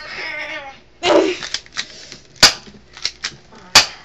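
A child's wavering, wordless cry, followed by a few small sharp clicks and two loud sharp bangs about a second and a half apart.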